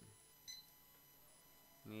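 A single short, high electronic beep from a barcode scanner, confirming a good read as an item is scanned into the point-of-sale cart.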